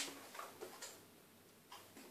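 An acoustic guitar chord fading out, then a few faint, irregular clicks of fingers touching the strings and guitar body while nothing is played.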